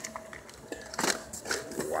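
A few short knocks and rustles of packaged cookies and cardboard boxes being handled, with scraping from the phone rubbing against clothing.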